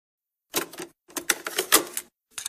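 Two bursts of rapid, sharp mechanical clicking and clattering, a short one about half a second in and a longer one from about a second in.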